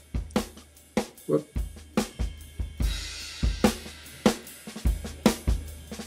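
Recorded drum kit played back from a DAW: kick, snare and hi-hats in a steady beat, with a cymbal wash coming in about halfway through.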